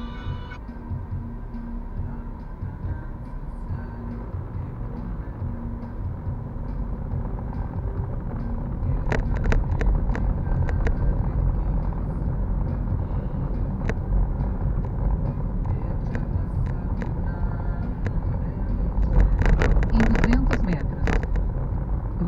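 Road noise inside a moving car: a steady low rumble of engine and tyres that grows a little louder partway through. Scattered sharp knocks or rattles sound now and then, with a cluster of them near the end.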